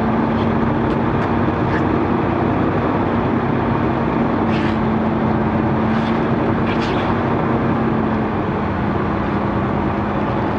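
Semi truck's diesel engine running as the truck rolls slowly at low speed, a steady drone with a pitched hum. A few short hisses come through in the middle.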